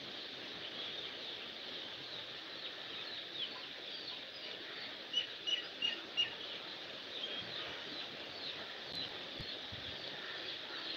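Small birds chirping faintly over a steady hiss, with a quick run of four short high chirps about five seconds in.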